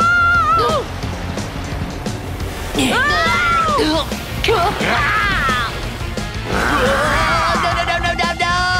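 Background music under cartoon voices yelling and screaming, about four drawn-out cries.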